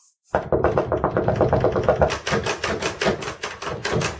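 A rapid, even run of knocks or taps, several a second, starting about a third of a second in.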